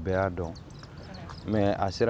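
A man's voice speaking in short phrases, with a pause of about a second in the middle.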